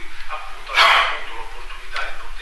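A man speaking into a conference microphone, with one short, loud, harsh burst of noise about a second in.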